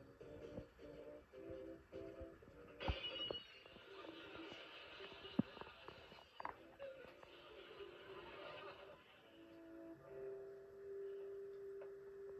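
A TV sitcom soundtrack heard through a television speaker in a small room. It opens with music in short repeated notes, then a sudden bang about three seconds in is followed by several seconds of noisy clatter. A long held music note comes near the end.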